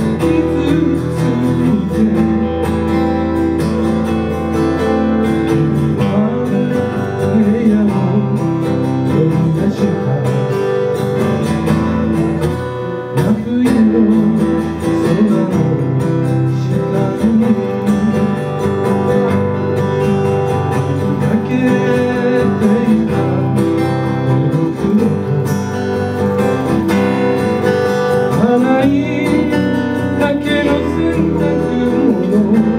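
Two acoustic guitars playing together in a live duo performance of a Japanese pop song, with a man singing over them.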